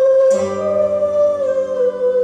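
Acoustic guitar duet on nylon-string guitars. A chord is plucked about a third of a second in, under a long held melody note that wavers slightly.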